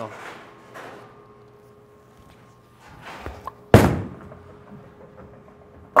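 A reactive-resin bowling ball is set down on the lane with a sharp thud a little past halfway, then rolls with a low fading rumble. It crashes into the pins right at the end. Faint footsteps of the approach come just before the release.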